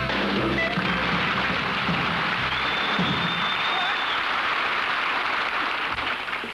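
A skiffle band's final chord dies away in the first second, then a studio audience applauds steadily.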